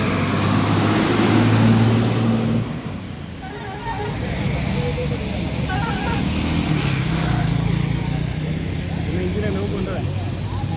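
A bus engine running as the bus drives through floodwater, with a hiss of spray, loudest in the first two and a half seconds. Then a motorcycle engine runs steadily as the bike rides through the flooded road.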